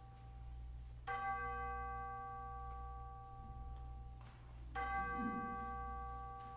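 A bell struck twice, about four seconds apart, each strike ringing on with several steady overtones, over a low steady hum.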